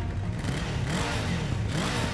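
A low, engine-like revving sound that rises and falls in pitch several times.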